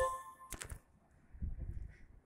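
A short electronic tone of several steady pitches sounds for about half a second, followed by a sharp click. After that there is only faint low background noise.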